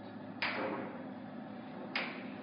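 Two sharp hand claps about a second and a half apart, keeping a slow beat, each with a short echoing tail off the hard walls of a hallway.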